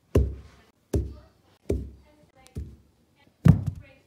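An iPhone 6 tumbling down carpeted stairs: five dull thuds a little under a second apart, the last the loudest as it lands at the bottom.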